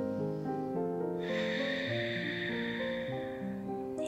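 Slow background music with long held notes, and about a second in a long, audible breath exhaled over some two seconds, as part of slow relaxation breathing.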